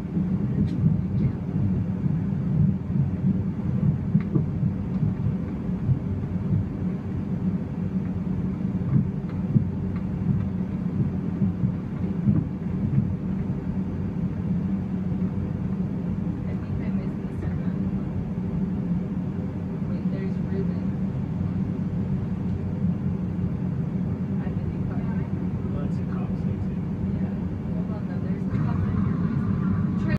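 A steady low rumble with a constant hum running through it.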